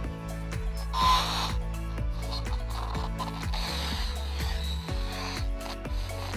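Music with a steady, clicking beat over a bass line, with a short burst of hiss about a second in and a longer stretch of hiss in the middle.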